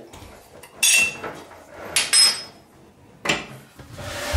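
Metal faucet mounting hardware clinking against the stainless faucet body as it is handled: a few sharp clinks about a second apart, some ringing briefly.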